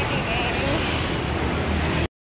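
Steady road traffic noise on a busy city street, with a low rumble of wind on the microphone and faint voices in the background.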